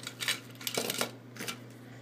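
Loose die-cast toy cars clinking and clattering against one another as they are handled in a box: a quick run of short metallic clicks in the first second and a half.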